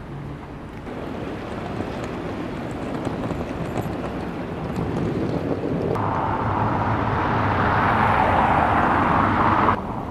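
Outdoor ambient noise, a steady rushing without distinct events, growing gradually louder. About six seconds in it changes abruptly to a louder, brighter rush, which cuts off just before the end.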